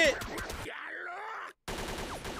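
Anime episode soundtrack: a voice falling in pitch like a groan, then a brief total cut-out and a fainter, noisy stretch of sound effects.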